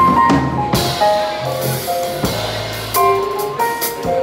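Live jazz-fusion band playing: Casio Privia PX-860 digital piano over drum kit and electric bass, on a Gm7–Fm7 vamp.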